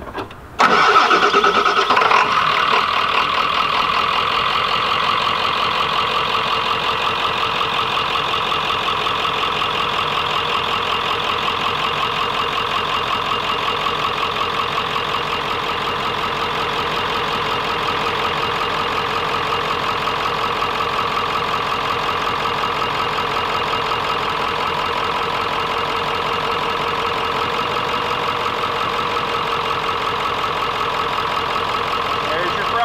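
Ford 7.3 Powerstroke turbo-diesel V8, running with its valve covers off, starts about half a second in and settles into a steady idle. The owners suspect a failing injector on cylinder 5 or 7, or a glow-plug-burnt injector harness.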